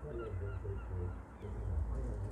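Birds calling outdoors: a rapid series of short, partly down-gliding cries over a steady low rumble.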